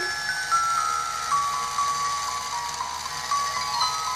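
Toy music box playing a tinkly melody of single chiming notes that step mostly downward in pitch, a few notes a second.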